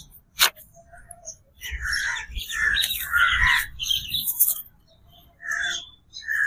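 Paper picture cards being picked up, shuffled and laid down on grass: a brief click, then a run of soft, irregular rustles.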